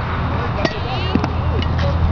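A youth tee-ball bat striking the ball off the tee once: a single short knock about two-thirds of a second in, over a steady low background rumble.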